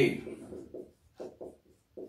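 Marker pen writing on a whiteboard: a handful of short, irregular strokes.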